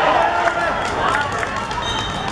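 Several voices shouting and cheering as a goal goes in, with a few short sharp knocks among them.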